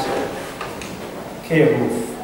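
Chalk writing on a blackboard: faint scraping with a few light taps as an equation is chalked up. A man's voice cuts in briefly near the end.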